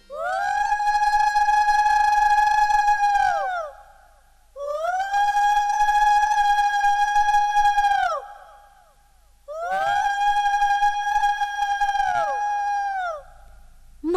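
Three long blasts on blown conch shells, two sounding together at nearly the same pitch. Each blast bends up into a steady note, holds for about three and a half seconds and drops away at its end, with short gaps between the blasts.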